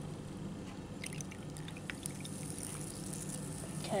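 Sprite being poured from a plastic bottle into a glass of ice and blue Powerade, a faint pour with a few small crackles of fizz about a second in.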